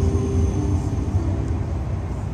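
A low, uneven rumble with an electric keyboard holding soft sustained notes over it; one note changes about halfway through.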